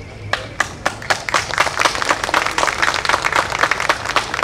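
Audience applause, starting with a few scattered claps and filling out into steady clapping after about a second.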